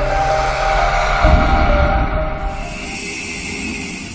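Cinematic intro sound effect: a sustained horn-like chord over a deep rumble, with a low boom just over a second in, then the tones thin out under a rising hiss.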